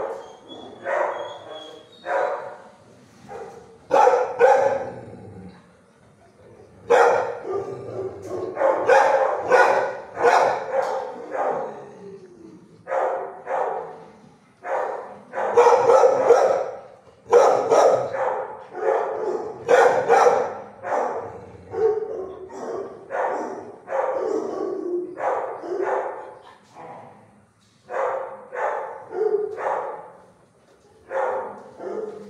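Shelter dogs in nearby kennels barking over and over, in quick runs of barks with short pauses in between.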